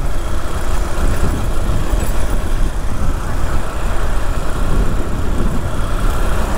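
Honda NXR 160 Bros single-cylinder motorcycle being ridden through city traffic, its engine running steadily under a constant rush of wind noise on the helmet-mounted camera's microphone.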